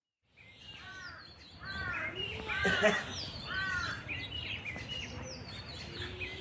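Birds chirping repeatedly outdoors, short arching calls about once or twice a second with higher, thinner chirps above them, over a background hum of outdoor noise. The sound cuts in abruptly just after a silent start.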